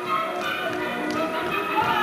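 Music for a can-can dance routine, with the dancers' shoes tapping on a wooden stage. A high sliding cry falls in pitch near the end.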